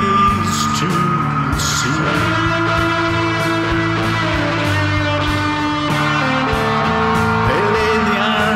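A rock song with guitar and singing.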